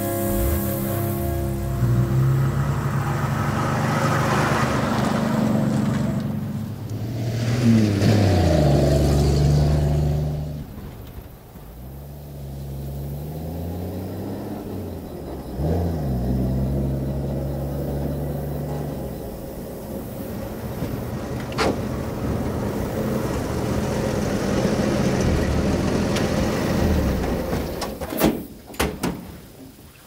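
Old pickup truck engine running as the truck approaches, its pitch sliding up and down with the throttle, then easing off. A few sharp clicks or knocks come near the end.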